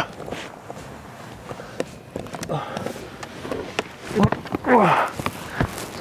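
A man's short grunts and groans, two of them falling in pitch, with a breathy huff near the end, over clothes rustling and scuffing against the seats and scattered light knocks, as he squeezes his body through a narrow gap between a car's front seats.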